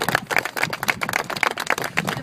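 A small group of people applauding, many quick irregular hand claps.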